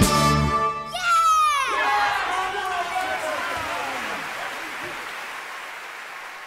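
Stage cast and band end a song on a held chord, and about a second in the audience starts cheering, with whoops that fall in pitch over applause. The cheering and applause fade gradually over the following seconds.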